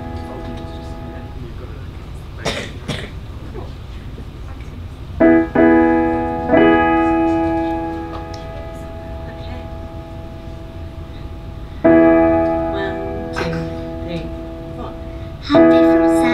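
Electric keyboard with a piano sound playing slow sustained chords: a chord left over from just before fades out, then new chords are struck about five seconds in, again a second later, near twelve seconds and just before the end, each left to ring and fade.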